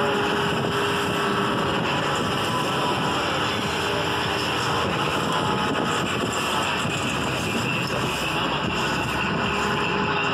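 Motorboat under way: its engine running steadily, mixed with wind rushing over the microphone.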